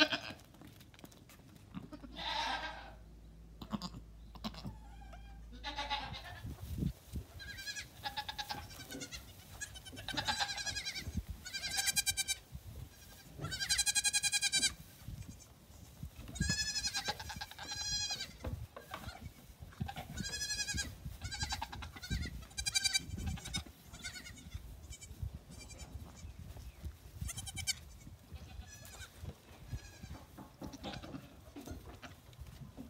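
Goat kids bleating: high, wavering calls repeated every second or two, several voices overlapping, starting about seven seconds in and loudest in the middle. A few knocks come before the calls begin.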